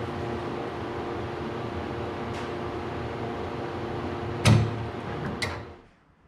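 Steady machine hum, like a fan running, with two sharp knocks about four and a half and five and a half seconds in, the first the loudest; the hum fades out just before the end.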